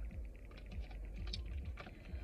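A run of light, irregular clicks and taps from hands handling small objects, over a low steady rumble.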